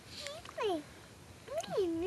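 Two short high-pitched vocal sounds with sliding pitch: a falling one about half a second in and a rising-then-falling one near the end.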